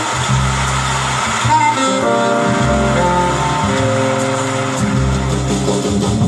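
Recorded live jazz by a small band: a steady, moving bass line under held melodic notes, with cymbals shimmering above.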